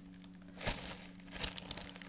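Clear plastic bread bag crinkling as it is handled and set down on a table: a soft knock about two-thirds of a second in, then a run of small crackles in the second half.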